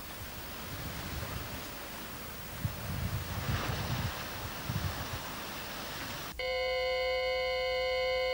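Steady rushing noise of distant surf, with low gusts of wind on the microphone. About six seconds in, it cuts suddenly to a steady electronic tone of several pitches held together.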